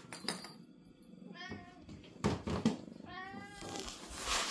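A young cat meowing twice, a short meow and then a longer one, with a few short thumps between them.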